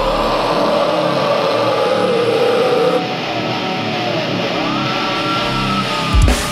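Live heavy music with the electric guitar playing alone: held, distorted notes that ring on, some bending in pitch, with no drums or bass under them.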